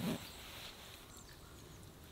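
A short, low animal call right at the start, followed by faint outdoor background.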